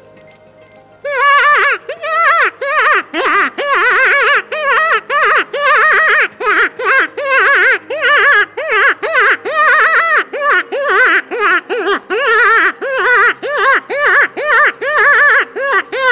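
Gunbroker FC08 open-reed predator call blown by mouth, starting about a second in: a loud, unbroken run of wavering wails, each note rising and falling in pitch, two to three a second. It is a distress cry used to lure foxes and other predators.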